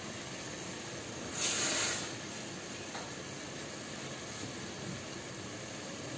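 Chicken frying with spices and tomato in a pan, a steady sizzling hiss, with a brief louder rush of noise about one and a half seconds in.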